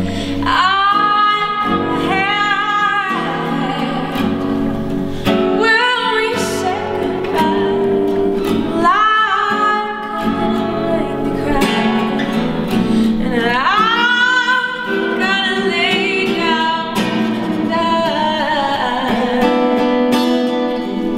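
A woman singing a blues tune with a man playing acoustic guitar, her held notes sliding in pitch over the guitar's steady rhythm.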